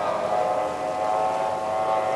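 Racing outboard engine on a tunnel-hull race boat running flat out, a steady high-pitched whine over the rush of water.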